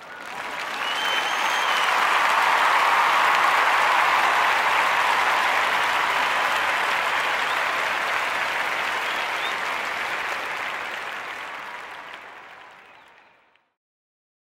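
Crowd applauding, fading in over the first couple of seconds and fading out near the end, with a faint brief whistle about a second in.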